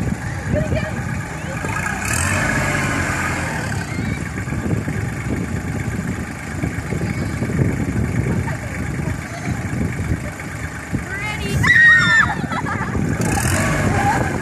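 Kubota L3200 compact tractor's three-cylinder diesel engine running steadily while its front loader lifts the bucket. Children's voices and squeals rise over it about two seconds in and again, louder, near the end.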